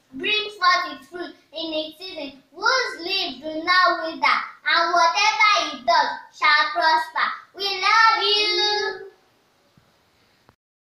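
A child singing solo with no instruments, one voice with held, sliding notes that stops about nine seconds in.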